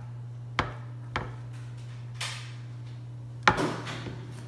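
A nonstick frying pan knocking a few times against a granite countertop as a hand pats down food in it. The loudest knock comes about three and a half seconds in, followed by a short scrape. A steady low hum runs underneath.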